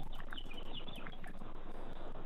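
Steady hiss of a telephone call line, with a few faint, short high chirps in the first second.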